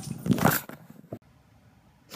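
Rustling and bumping of a phone being handled as the picture tumbles, then a single short click about a second in.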